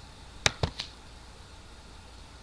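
Three quick clicks at a computer about half a second in, the first the loudest, then a faint low steady hum.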